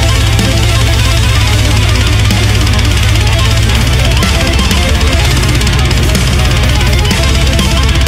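Loud deathcore metal: heavily distorted guitars with a strong low end over very fast, dense drumming, played at a steady full level.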